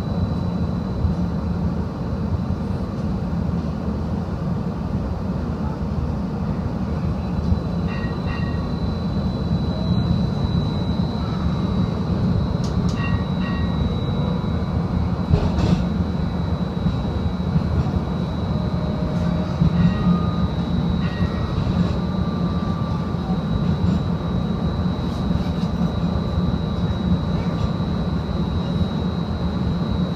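Seattle First Hill streetcar in motion, heard from inside the car: a steady low rumble of the running car under a thin, steady high whine.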